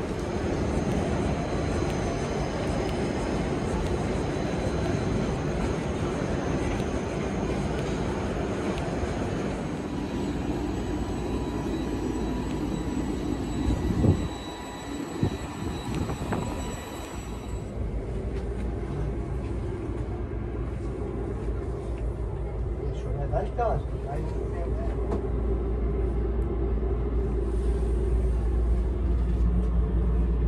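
Railway platform ambience beside a standing passenger train: a steady hum with thin, high, steady whines that cut off abruptly a little past halfway, a brief sharp knock just before that, and a low rumble that grows toward the end.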